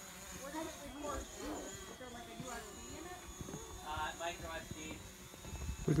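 Small camera drone buzzing steadily in the air overhead, a thin high-pitched whine from its propellers.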